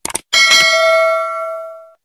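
A quick click, then a single bell ding that rings for about a second and a half and fades away: a notification-bell sound effect for the subscribe button's bell being clicked.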